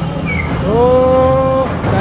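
A man's drawn-out "ooo" exclamation, which rises at its start and then holds one long note for about a second, as the chairlift starts moving. A steady low rumble runs underneath.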